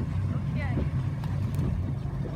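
Motorboat engine idling with a steady low hum.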